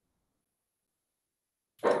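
Near silence, dead air with no sound at all, until a man starts speaking near the end.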